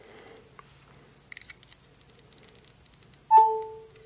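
A phone's charging alert: a short electronic chime about three seconds in, a higher tone with a lower one beneath it that lingers a little longer. It sounds as power from a car USB charger touched to a battery reaches the phone. Before it come a few faint clicks of metal contacts being touched together.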